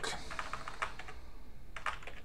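Computer keyboard typing: a quick run of about half a dozen keystrokes in the first second, then two more keystrokes near the end, as a mistyped word is deleted and retyped.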